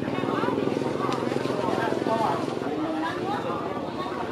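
People talking, with a steady low motor hum running underneath.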